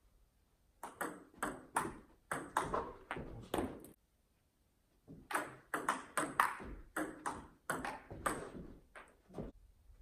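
Table tennis ball clicking back and forth, struck by paddles and bouncing on the table in quick alternation. One run of hits lasts about three seconds, then comes a pause of about a second, then another run of about four seconds.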